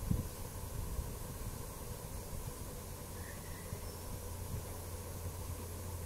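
Quiet room tone: a steady low hum with a faint even hiss and no distinct sound events.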